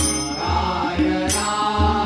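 Tabla played in accompaniment: deep, gliding strokes on the bayan under ringing pitched strokes on the dayan, with men chanting over it. A sharp, bright strike sounds twice, at the start and again a little past one second in.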